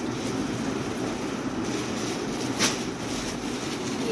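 Steady low rumbling room noise, with a short crinkle of a plastic-wrapped clothing packet being handled about two and a half seconds in.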